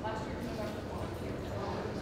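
Room tone: a steady low hum with faint voices in the background.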